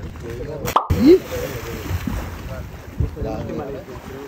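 A person diving head-first from a boat into the sea: one splash as he hits the water about a second in, with voices of people on board around it.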